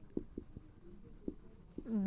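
Marker pen writing on a whiteboard: a string of short, irregular scratchy strokes and light ticks as words are written out.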